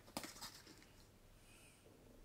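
Near silence: room tone, with a few faint handling clicks in the first half-second as a cardboard pickup box is picked up.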